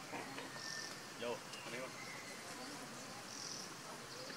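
A flying insect buzzing close by, its pitch wavering, loudest a little over a second in. Short high chirps sound twice over a steady outdoor background.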